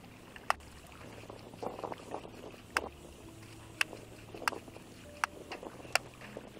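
Hands sloshing and rubbing laundry in water in a metal washing basin, with several sharp clicks at irregular intervals.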